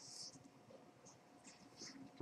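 Near silence: room tone with a faint steady hum, and two faint, brief hissy sounds, one at the start and one near the end.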